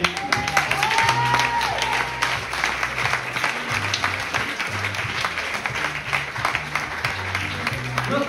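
An audience clapping steadily, over background music with a bass line.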